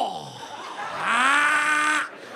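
A person's voice making wordless comic noises: a quick falling whoop that fades, then a held, slightly rising moan lasting about a second near the end. The noises mimic someone heard from a closet while struggling to get dressed.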